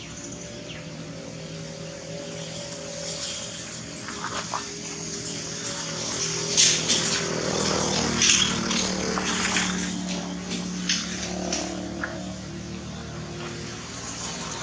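A motor vehicle's engine running steadily, growing louder toward the middle and then easing off as it passes, with brief sharp crackles over the loudest part.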